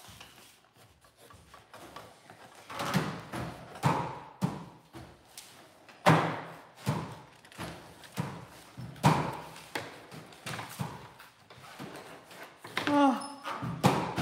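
Irregular dull thuds, about one every second or two, from a child's feet and body bumping on a treadmill deck and handrails as she hangs and swings on them. A short child's voice comes in near the end.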